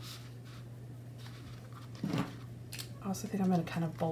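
Faint scratching of a pen writing on paper and soft handling of a paper notebook, over a steady low hum, with a brief louder handling noise about halfway through.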